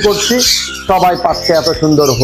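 A man talking in Bengali over the squawks of caged parakeets. His voice is the loudest sound, with sharp bird squawks above it.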